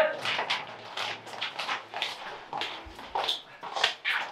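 Footballers clapping their hands and shouting short calls of encouragement in a block-walled corridor. The claps and calls are scattered, a few a second.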